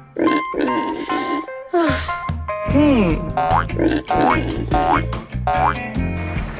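Cartoon background music with comic sound effects: a run of wobbling, springy boings, then several swooping and rising slide-whistle-like tones.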